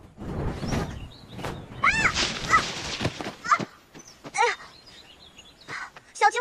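A rushing whoosh over the first half, with a handful of short, high-pitched animal cries that rise and fall in pitch, the first about two seconds in and the last near the end.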